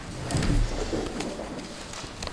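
Rustling papers and small knocks as people get up from their desks and gather documents, with a brief low sound about half a second in.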